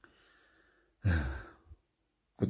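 A man's audible in-breath between phrases, followed about a second in by a short voiced sigh-like sound from the same speaker.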